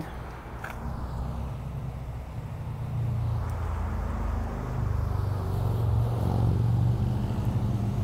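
A motor vehicle engine running close by, a low rumble that grows louder from about three seconds in.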